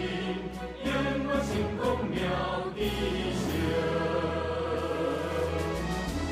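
Music with a choir singing, running steadily over an instrumental backing.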